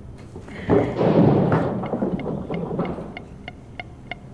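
A sudden rumble, like a thunderclap, swelling about a second in and dying away over the next two seconds. Near the end, a steady run of light ticks, about four a second.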